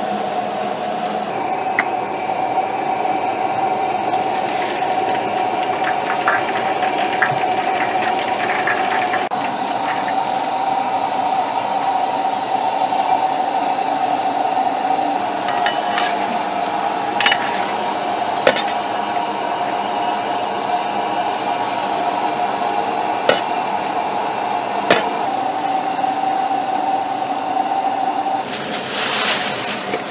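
Kitchen machinery giving a steady whine, with occasional sharp metallic clinks of utensils. Near the end the whine stops and a loud burst of hissing takes over.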